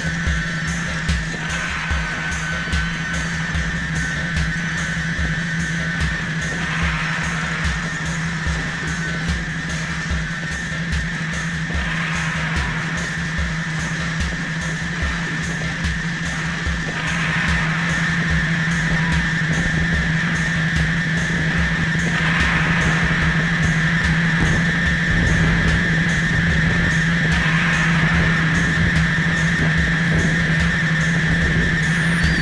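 Live electronic music from modular synthesizer, turntables and electronics. A steady low drone and a high sustained tone sit over fast, stuttering low pulses, and the whole grows louder a little past halfway.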